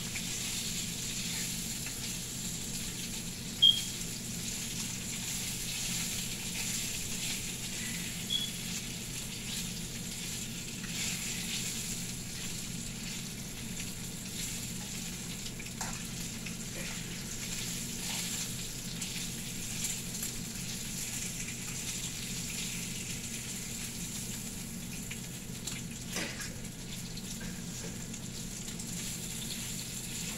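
Bacon strips sizzling in a frying pan, a steady hiss, with a few sharp clicks of a fork against the pan as the strips are turned, the loudest about four seconds in.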